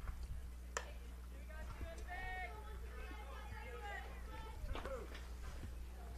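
Faint ambience at a softball field: distant high-pitched voices of players and spectators calling, over a steady low electrical hum, with a sharp click about three-quarters of a second in.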